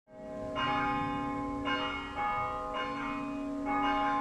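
Bells ringing: about five strikes on different notes at an uneven pace, each ringing on and overlapping the next.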